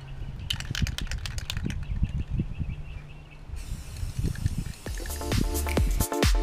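Aerosol spray-paint can rattling, then spraying with a steady hiss that starts a little past halfway. Electronic dance music with a steady beat comes in near the end.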